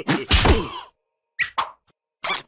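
Cartoon slapstick whack sound effect, one loud sudden hit, followed about a second later by two brief high sounds.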